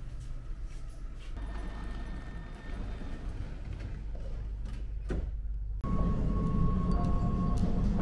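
Amsterdam metro train standing at a station with its doors open: a low steady rumble and a thin steady tone, typical of the door warning, starting about one and a half seconds in and lasting about a second and a half. After a brief drop-out a little past halfway, background music begins.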